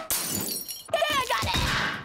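A cartoon crash-and-shatter sound effect, with a character's short strained cry about a second in.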